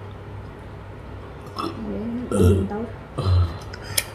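A person's voice: wavering vocal sounds from about one and a half seconds in, with two short, loud, low sounds about a second apart.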